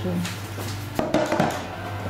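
A metal baking tray set down on a kitchen counter: a few sharp knocks and clatter about a second in.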